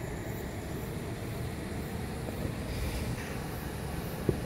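Steady low rumble of roadside outdoor noise, with road traffic in the background.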